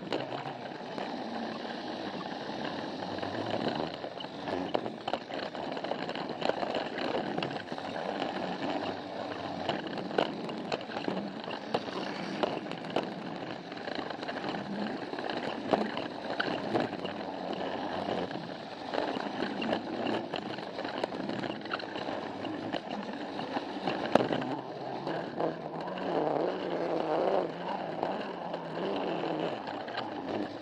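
Battery-powered Plarail toy train running along plastic track: a steady whir of the small motor and gearbox with the wheels rattling and clicking over the track joints, and one sharper knock about three quarters of the way through.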